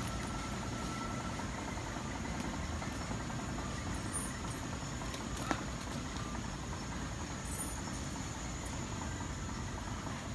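Steady low rumbling and rustling noise of riding on a walking elephant, with a single sharp click about halfway through.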